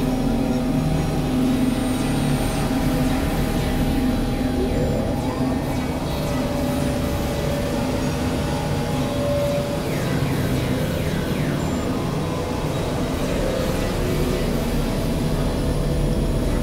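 A dense, steady layering of several music and sound recordings playing over one another: held drone tones over a low, noisy, engine-like bed, with short rising sweeps about five seconds in and again around ten to eleven seconds.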